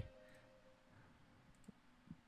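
Near silence: the faint tail of a held synth note dies away in the first second, and a single faint click comes near the end.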